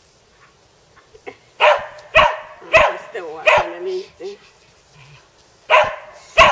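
A dog barking in play: five sharp barks spread over the last four seconds, with a short whine between them.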